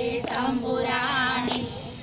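A high voice singing a melody in held, gliding phrases over a steady sustained note, with a short break in the singing near the end.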